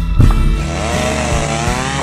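Two-stroke chainsaw running at high revs, its pitch wavering as it cuts, coming in about half a second in after a brief crackle and knock of brush.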